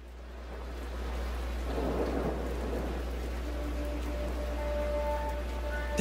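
Steady rain falling, fading in over the first second, with a low rumble of thunder swelling about two seconds in. Faint held music notes come in during the second half.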